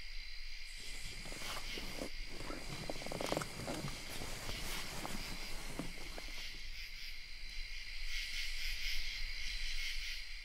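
Night-time chorus of crickets: a steady, high-pitched trilling. Irregular rustling noises come and go over the first half.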